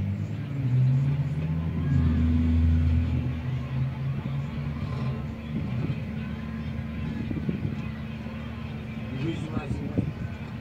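Car engines revving in the first few seconds, then running steadily at idle, with voices under them. The sound is a film soundtrack played through a TV speaker.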